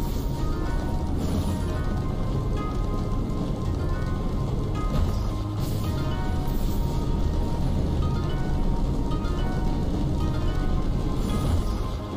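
Online slot game's background music with a steady low beat and short melodic notes while the reels spin, broken by brief hissing bursts about a second in, around the middle and near the end.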